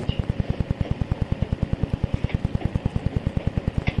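A steady, rapid low thudding of about twelve pulses a second, a mechanical pulsing in the old sermon recording, heard in a pause with no clear speech.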